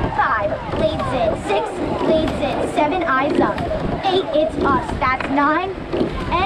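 Mostly speech: a coxswain's voice, calling stroke counts in short, rapid shouts during a rowing race start.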